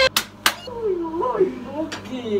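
Two sharp clicks close together right at the start, then a person's voice talking with rising and falling pitch.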